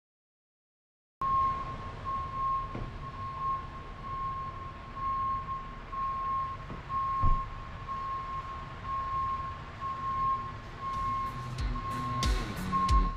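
Reversing alarm on construction machinery, starting about a second in and beeping steadily a bit under two beeps a second, over the low rumble of an engine with an occasional thump.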